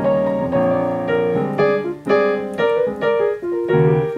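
Piano played with both hands, chords with a melody moving over them, in the key of B-flat major. New notes are struck about every half second.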